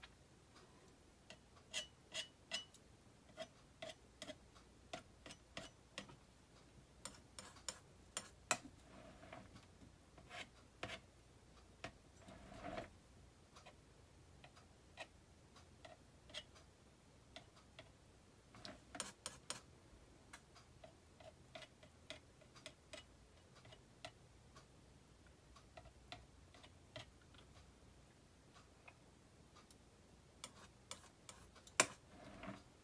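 Faint, irregular taps and clicks of a palette knife dabbing paint onto a canvas panel, some coming in quick clusters, with a short scrape about twelve seconds in.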